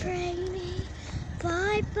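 A child's voice calling out in long, drawn-out sing-song notes, one held for most of the first second and another rising one near the end.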